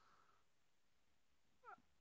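Near silence, broken near the end by one faint, brief rising call.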